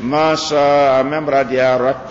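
A man's voice chanting Arabic in long, held, melodic phrases, as in Quranic recitation. The first note is drawn out for most of a second, and shorter phrases follow.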